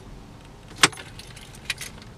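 Car keys clicking and jingling at the ignition: one sharp click about a second in, then two lighter clicks near the end.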